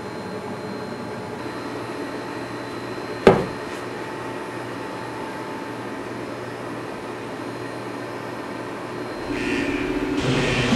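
A steady machine-like hum with several held tones, broken by one sharp knock about three seconds in. Near the end a louder sound comes in.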